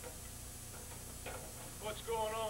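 Quiet room tone with a steady low hum, broken by a few brief, faint voice sounds; the last starts near the end and runs into louder speech.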